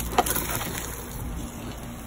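Sap fire burning in a foil pan, under a steady low rumble of wind on the microphone, with two sharp clicks right at the start.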